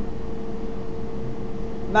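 Steady hum of a powered-up Karl Storz endoscopy video stack: one unchanging mid-pitched tone with a fainter lower one over a low rumble.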